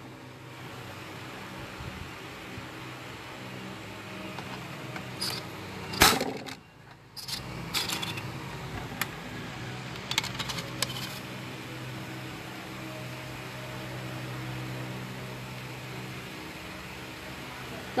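Handling noise from a phone being repositioned by hand: scattered clicks and knocks, the loudest about six seconds in, over a steady low hum.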